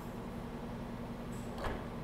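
Power liftgate of a 2020 Ford Edge closing on its motor, ending in a single short thud as it shuts and latches about one and a half seconds in, over a steady low hum.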